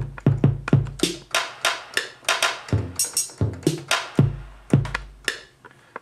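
Electronic drum sounds from Logic Pro's Ultrabeat drum synth: deep kick-drum hits mixed with sharper, hissier snare- and hi-hat-like hits, in an uneven sequence.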